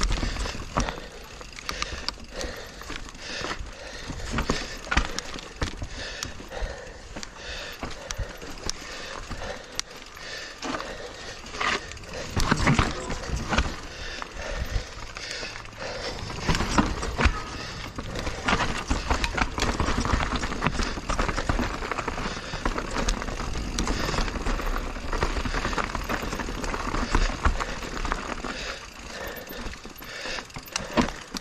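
Full-suspension 29er mountain bike (a Giant Reign Advanced Pro 29) riding down a rough dirt and rock trail: tyres running over dirt and stones with a constant rattle and frequent sharp knocks from the bike, louder in bursts over rougher ground.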